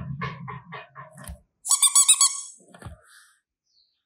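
A run of short, high squeaky chirps, then a louder, quick burst of rapid squeaks about one and a half seconds in, dying away before the end.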